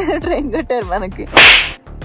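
A short, loud whoosh transition sound effect about a second and a half in, a burst of hiss lasting about a third of a second. Before it there is background music with a voice.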